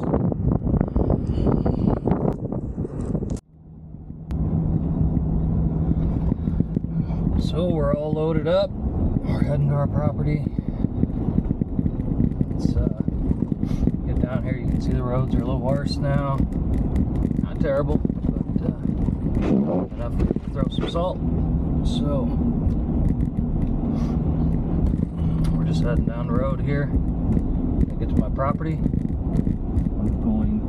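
Outdoor noise on the microphone, then, after a cut about three seconds in, a pickup truck driving heard from inside the cab: a steady engine hum with road noise. A voice is heard over it at times.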